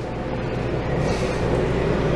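Steady low mechanical hum with a noisy hiss over it, like a machine or ventilation running.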